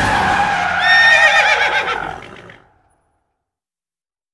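Film sound mix fading out: a low rumble with a short, wavering, high-pitched whinny-like cry about a second in, then everything fades to silence by about three seconds in.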